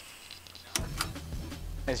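Steady low electrical hum, the noise floor of a wireless lavalier mic system, setting in about a second in after a brief quiet, with two sharp clicks.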